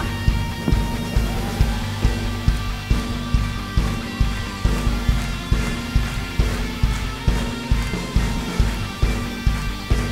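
Live worship band playing an instrumental passage with no singing: electric guitar strumming chords over a steady kick-drum beat of about two per second.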